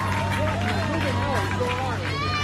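A person's voice, wavering in pitch, over a steady low hum.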